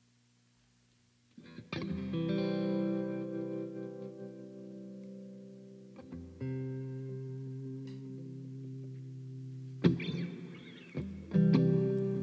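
Electric guitar opening a song: after a faint amplifier hum, chords are struck about a second and a half in and left to ring out, a new chord comes in about six seconds in, and strummed chords enter near the end.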